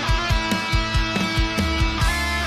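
Metalcore-rock song playing: distorted electric guitars holding chords over drums, with a quick, uneven run of kick drum hits.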